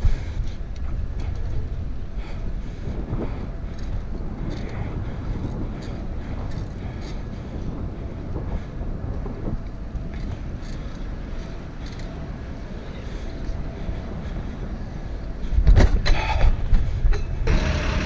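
Riding noise from a bicycle moving along a city street: a steady low rumble of air and tyre on asphalt, with traffic around it, growing louder near the end as the bike moves in among vehicles.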